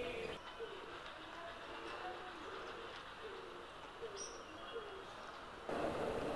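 Faint bird calls in the background: low notes repeating every second or so, with one short high chirp about four seconds in.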